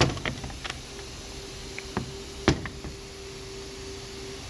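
Several sharp knocks and clicks of plastic evap charcoal canisters being handled and set down on a workbench, the loudest about two and a half seconds in, over a steady faint hum.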